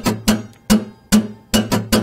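Acoustic guitar strummed with a pick-less hand, one chord struck in short strokes about twice a second, with three quicker strokes near the end.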